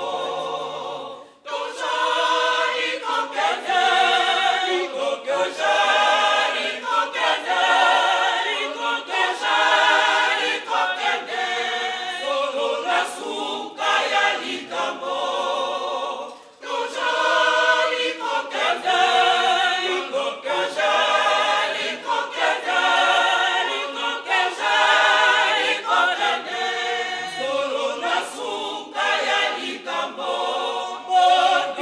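Mixed church choir of men and women singing a hymn a cappella in parts, pausing briefly between phrases about a second in and again about halfway.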